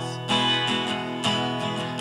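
Acoustic guitar strumming chords, with a new strum about once a second.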